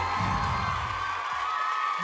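Television show introduction music with a high held tone, under a studio audience cheering and whooping; the bass drops out about a second and a half in.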